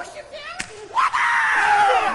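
A sharp smack, then about a second in a loud, high-pitched scream held for about a second, its pitch sliding slowly down.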